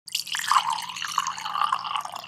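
A title-card sound effect: a dense, rapid run of small drip-like pops and ticks over a faint low hum.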